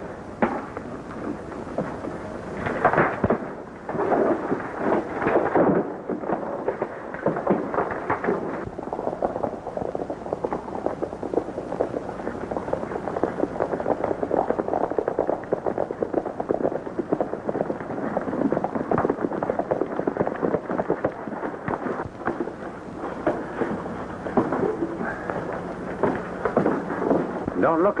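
Hoofbeats of several horses galloping, a dense, rapid, steady clatter that sets in about six seconds in, after a few louder thumps in the first seconds.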